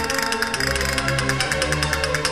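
Castanets clicking in fast, dense rolls over a Spanish Baroque sonata, with instrumental accompaniment holding sustained bass and mid-range notes.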